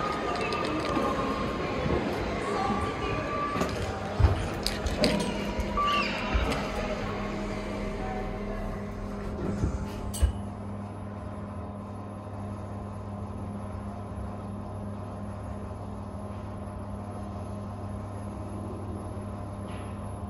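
Busy indoor ambience with background music and a few knocks for the first half. About halfway the KONE MonoSpace lift's doors shut with a sharp knock. A steady low hum follows as the car travels up one floor.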